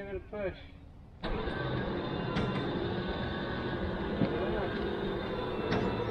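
Winch motor starting about a second in and running steadily under load as it drags a long-parked pickup truck toward a trailer.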